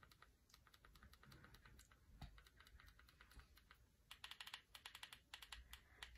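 Faint, irregular clicking of buttons pressed on a handheld ring-light remote, coming in quicker runs near the end.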